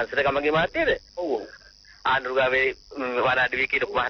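Speech only: a person's voice talking in short phrases with brief pauses.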